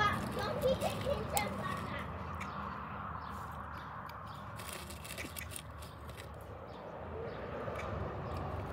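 A child's voice briefly in the first second or so, then a steady low background hiss with a few scattered sharp clicks.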